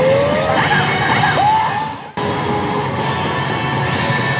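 Pachislot machine's battle effects: game music with character shouts and sound effects over it, briefly cutting out about two seconds in before a new effect starts.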